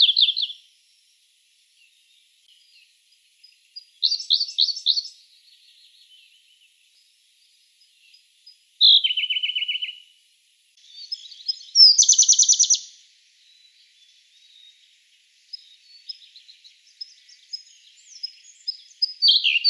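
Siberian blue robin singing: four short, fast-trilled phrases a few seconds apart, then softer scattered high notes near the end.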